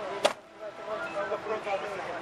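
Rear door of a Mercedes-Benz Sprinter ambulance being shut, one sharp knock about a quarter second in as it latches.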